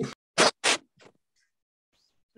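Two short scratching noises about a third of a second apart, then a fainter one, picked up by a microphone.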